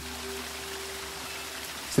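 Rain sound effect: a steady, even hiss of falling rain, with a faint held musical note under it.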